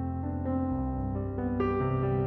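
Slow piano music: held notes and chords over a sustained bass, with a fuller chord coming in about a second and a half in.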